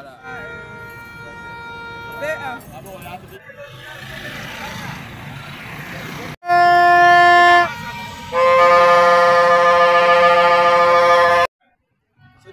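Plastic fan's trumpet (vuvuzela) blown in two loud, long blasts: a lower one of about a second, then a higher one held for about three seconds that cuts off suddenly. Fainter horn tones sound over street noise early on.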